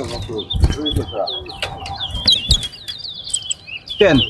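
Caged male towa-towa (large-billed seed finch) singing in a song contest: a long, quick run of short high warbled notes. Low voices and a few dull knocks sit underneath.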